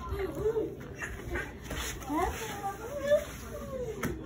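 Young children's wordless vocalizing while playing: babble and squeals whose pitch rises and falls.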